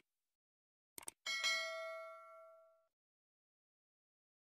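Sound effect of a subscribe-button animation: two quick clicks about a second in, then a single bright bell ding that rings out and fades over about a second and a half.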